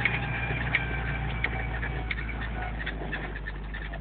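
Inside the cab of a 1995 Jeep Wrangler YJ creeping along a trail: a steady low engine and drivetrain drone, with repeated short, high squeaks and small rattles that the driver puts down to the spare tire on the rear.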